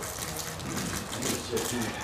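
Quiet room tone with faint, indistinct voices.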